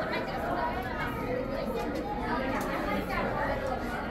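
Indistinct chatter of several people talking at once, a steady mix of overlapping voices with no single clear speaker.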